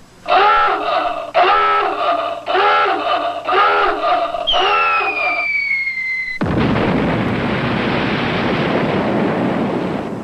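Five long rising-and-falling pitched calls, then a falling whistle sound effect. About six and a half seconds in comes a big, sustained splash as a person hits the pool from a high diving board.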